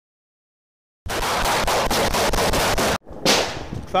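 Rapid gunfire in a sustained burst of about two seconds, roughly six shots a second, cut off abruptly, followed after a short break by a single loud shot that rings out.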